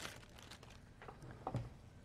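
Faint rustling of a rolled pre-made pie crust and its wrapper being handled and unrolled, with a brief soft thump about a second and a half in.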